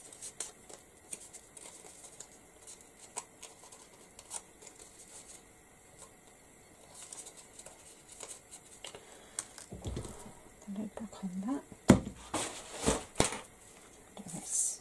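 Soft crinkling and rustling of die-cut paper flowers being bent and shaped between fingers, with light clicks. About twelve seconds in come a few sharper knocks, the loudest sounds, as things are handled on the table.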